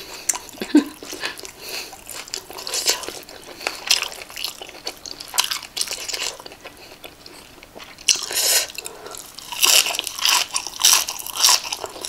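Close-up chewing and crunching of a mouthful of Thai spicy cucumber salad eaten by hand, with irregular crisp crunches that grow busier and louder in the last few seconds.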